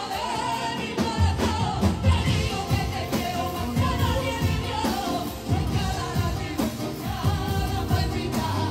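Live group of several singers singing a song together over acoustic guitar strumming, amplified through stage speakers.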